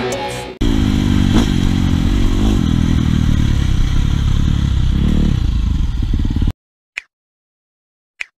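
Husqvarna FC450 dirt bike's single-cylinder four-stroke engine running under way, its pitch rising and falling several times as the throttle is worked, then cutting off suddenly. One short click follows about half a second later.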